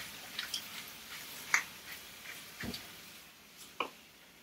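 A hand-twisted pepper grinder grinding black pepper over a pan of broccoli, making a few short, irregular gritty clicks; the loudest is about one and a half seconds in.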